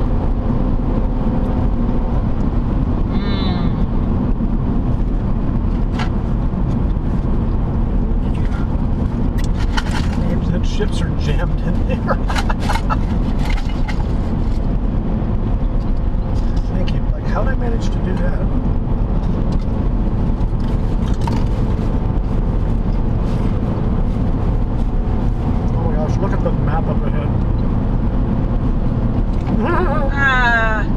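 Steady road and engine noise of a car driving at highway speed, heard from inside the cabin.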